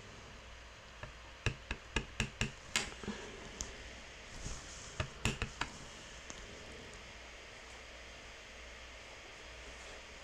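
Clear acrylic stamp block being handled and tapped against the work surface: a quick run of about half a dozen light knocks starting about a second in, then a few more around five seconds in, over quiet room noise.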